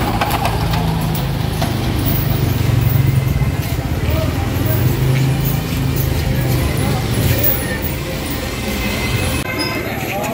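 A motor vehicle's engine running steadily at low speed, with people's voices in the background.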